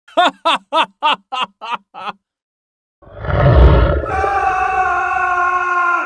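Seven short, voice-like cries in quick succession, each rising and falling in pitch and growing fainter. After a second of silence a deep rumble swells up and gives way to a loud sustained dramatic music chord.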